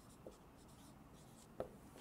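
Faint dry-erase marker writing on a whiteboard, with two light ticks, one about a quarter second in and one near the end; otherwise near silence.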